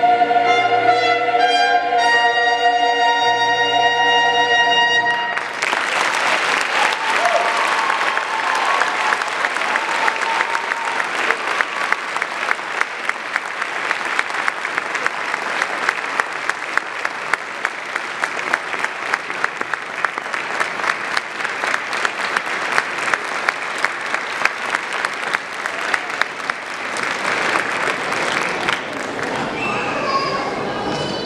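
A large choir with piano holds a final sustained chord for about five seconds, then a concert-hall audience applauds for over twenty seconds, the applause thinning out near the end.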